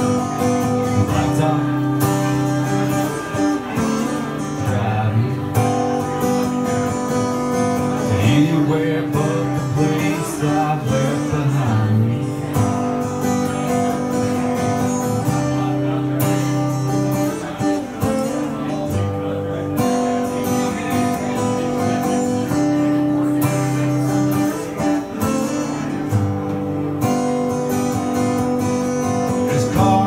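Steel-string acoustic guitar strummed steadily through an instrumental break, ringing chords in a regular rhythm.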